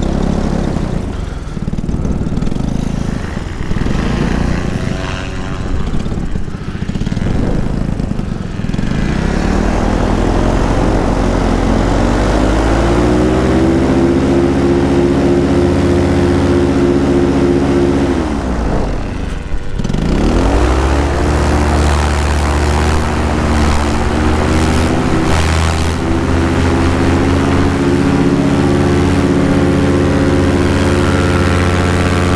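Paramotor engine and propeller on the pilot's back: uneven low running at first, then throttling up into a steady high-pitched drone. About two-thirds through, the power drops sharply for a moment and climbs straight back, then holds at high power.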